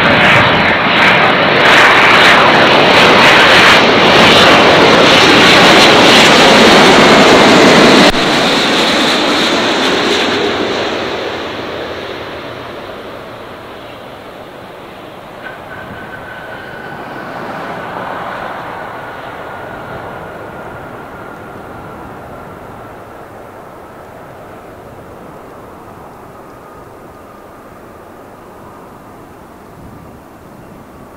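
Twin-engine widebody jet airliner passing low overhead on final approach, its engines loud, until the sound drops off sharply about a quarter of the way in. The jet then touches down and rolls out, its engine noise fading, with a thin whine slowly falling in pitch and a brief swell in engine noise a couple of seconds after touchdown.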